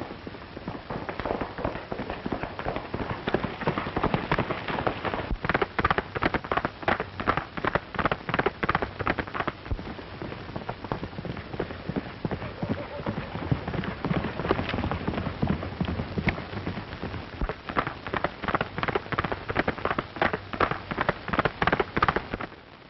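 Horse galloping: a fast, dense patter of hoofbeats that swells in over the first few seconds and cuts off sharply at the end, over the steady hiss of an old film soundtrack.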